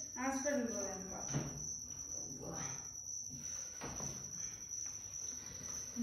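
A cricket trilling steadily on a single high pitch without a break.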